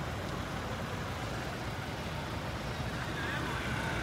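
An SUV rolling slowly past, its engine running and tyres on the road making a steady low noise.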